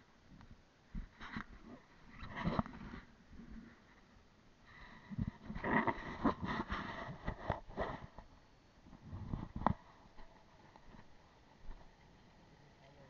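Wind gusting against a camera microphone in irregular bursts of rumble and hiss, with a sharp knock near the end.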